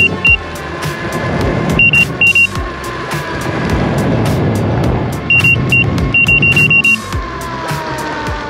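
Veteran Patton electric unicycle's speed alarm beeping in short, high-pitched bursts as it runs at about 60–65 km/h: a couple of beeps at first, two more about two seconds in, then a quicker run of beeps from about five to seven seconds. The alarm warns that the wheel is near its limit. Under the beeps is steady wind and tyre noise at speed on a wet road.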